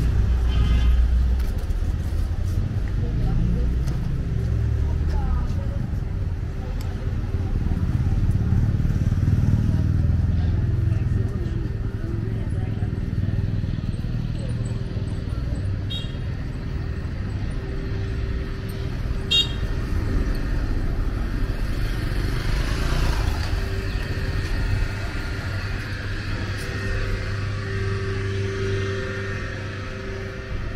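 Busy street ambience: a low rumble of motor traffic, strongest in the first ten seconds or so, with passers-by talking.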